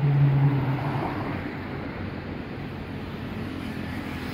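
Road traffic: a vehicle passing close with a steady low engine hum that is loudest at the start and fades about a second in, then an even wash of traffic noise.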